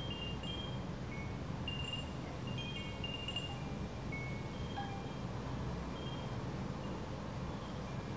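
Faint wind chime tinkling: scattered short high notes at several different pitches, a few each second, over a low steady hum.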